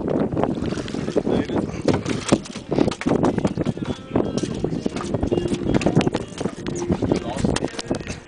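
A freshly landed fish flopping on a fiberglass boat deck: irregular slaps and knocks, many to the second.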